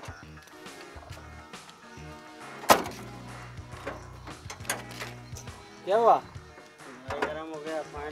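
A car door slams shut once, sharply, about a third of the way in, over a background film score with low sustained notes; brief voices come in near the end.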